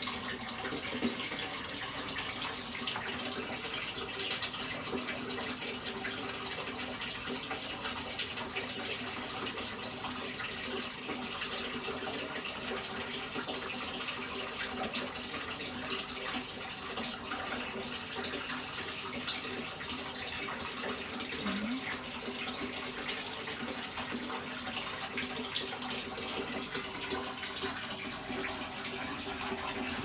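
Steady rushing of running water, even throughout, with a faint low hum beneath it.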